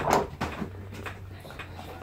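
Brief scraping and rustling of slime being stirred and handled in plastic cups in the first half second, then a faint low steady hum.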